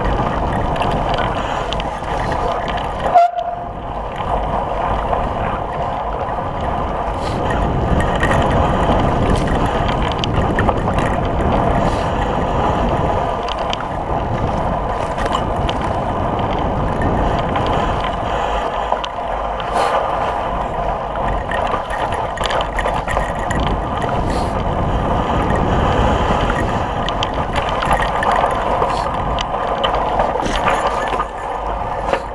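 Continuous riding noise from a mountain bike moving along a snowy trail, heard through a camera mounted on the bike or rider: wind on the microphone mixed with tyre and bike rattle. There is a sharp click about three seconds in, followed by a momentary cut-out.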